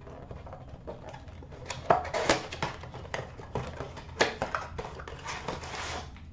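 Trading card packaging being torn open and the cards handled by hand: irregular crinkling and rustling with sharp clicks, loudest about two seconds in and again around four seconds.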